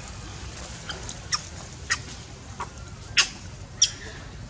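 Five short, sharp animal calls, spaced out, the loudest about three seconds in, over a steady low background rumble.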